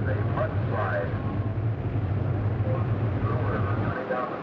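A steady low rumble with faint voices over it.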